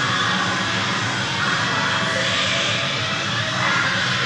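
A steady, even wash of background noise with no distinct events.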